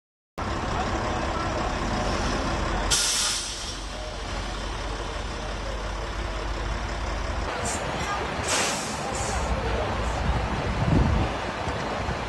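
Fire engine running at the scene of a building fire, a steady low rumble, with short hissing bursts about three seconds in and again near nine seconds; voices in the background.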